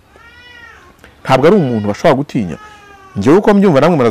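A faint animal call in the background during a pause in the speech: one high, drawn-out cry that rises and falls, lasting about a second.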